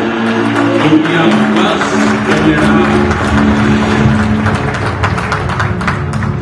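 Music from the soundtrack of a promotional video, played through a hall's sound system: sustained notes over a quick, steady rhythmic pulse.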